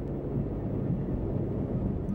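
A low, steady rumble with a faint wavering hum in it, growing slightly louder: a deep sound effect laid under underwater shark footage.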